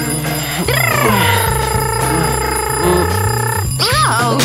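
A man's long, drawn-out yawn as he stretches on waking: it sweeps up and down, then holds one pitch for about three seconds, with a short rising-and-falling sound just after. Background music plays under it.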